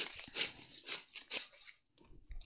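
Crinkling and light handling noise of plastic packaging and craft items being moved on a tabletop: a string of short, irregular crackles that dies away near the end.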